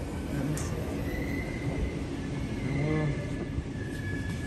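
Underground light-rail station platform ambience: a steady low hum with a thin, steady high whine coming in about a second in, and a faint voice about three seconds in.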